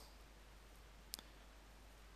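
Near silence with a single short click about a second in.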